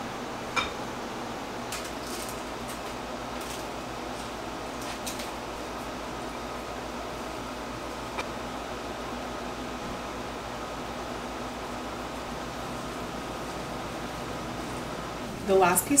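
Steady room hum with a few light clicks and scrapes as chopped chicken is tipped from a foil tray into a ceramic mixing bowl and stirred with a spoon.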